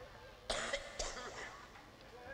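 A man coughs twice, two short coughs about half a second apart.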